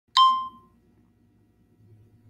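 A single bright ding just after the start, ringing out and fading within about half a second, followed by a faint low hum.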